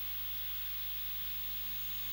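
Steady hiss with a faint low hum: the recording's background noise between spoken passages, with no other sound.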